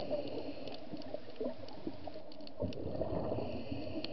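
Scuba diver's regulator breathing underwater: a hissing inhalation near the start and again in the last second, with gurgling exhaust bubbles and scattered sharp clicks.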